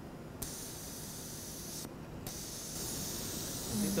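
A steady, faint hiss in an otherwise quiet procedure room; the high part of the hiss cuts out briefly near the start and again about two seconds in.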